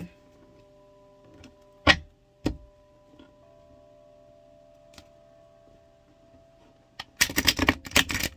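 A deck of reading cards being handled: two sharp card clicks about two seconds in, then a quick burst of card shuffling near the end, over faint steady held tones.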